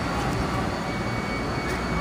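Steady rumble of street traffic, with no single event standing out.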